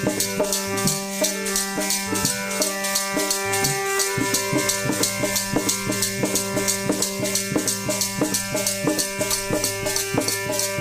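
Kirtan music: a harmonium holds steady chords while several chimtas, long steel tongs strung with jingles, are shaken in an even beat of about three clashes a second, with a hand drum under them.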